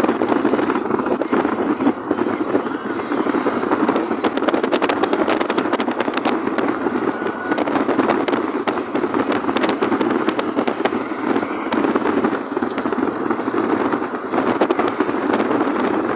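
Steady road and engine noise heard from inside a moving car, with spells of rapid crackling clicks from about four to eleven seconds in and again near the end.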